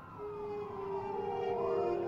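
Several sirens wailing at once, their pitches sweeping up and down and overlapping, growing louder; a steady low tone is held underneath from just after the start.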